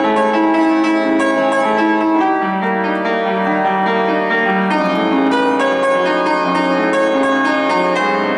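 Upright piano played live: a continuous, flowing passage of struck notes and chords that ring on under one another.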